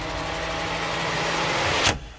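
Vehicle engine sound effect revving, swelling steadily louder, ending in a sharp burst near the end.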